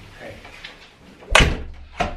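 An apartment front door slammed shut once, about a second and a half in, with a low rumble hanging on briefly after the bang.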